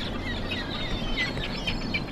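Gulls calling, a quick series of short calls in the second half, over a steady rushing background noise.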